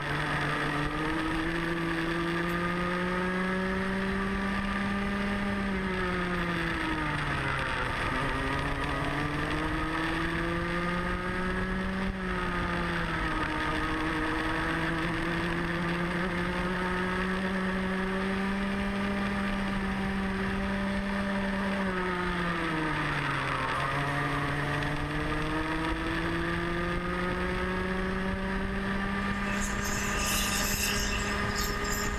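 Onboard sound of a Rotax Mini Max kart's 125cc two-stroke single-cylinder engine at racing speed. Its pitch drops sharply about three times as it comes off for corners, then climbs again under acceleration.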